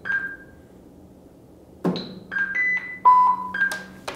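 Impulse hammer with a soft rubber tip tapping the tubular metal handle of an electric lawnmower for a modal impact test: one tap right at the start, then several more in quick succession in the second half. Each tap leaves the handle ringing briefly with a clear tone, at a few different pitches.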